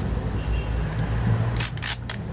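Adhesive tape pulled off its roll in two short rips near the end, over a steady low hum.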